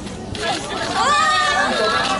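Several people's voices chattering and calling out, with one high, drawn-out call about a second in.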